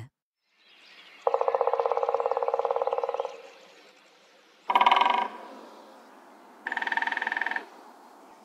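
Three woodpecker drum rolls on wood in turn. First comes a long, slow roll of about two seconds from a black woodpecker. A little past halfway a great spotted woodpecker gives a short, loud burst, and near the end a lesser spotted woodpecker gives a quieter, higher roll of about a second.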